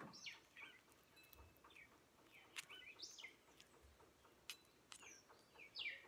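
Faint birds chirping: short, high, falling chirps scattered through the quiet, with a few soft clicks between them.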